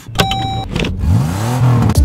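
A short steady tone, then an engine-like sound rising and falling in pitch, like a car revving.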